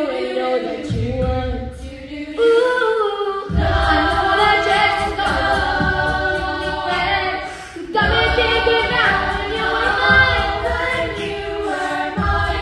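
A high school a cappella group singing in several vocal parts with no instruments. A low pulsing beat joins the voices about three and a half seconds in and drops away briefly just before eight seconds.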